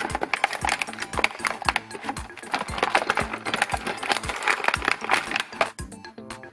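Stiff plastic blister packaging and cardboard crackling and clicking in rapid, irregular snaps as a toy figure is pulled free of its box, with background music underneath.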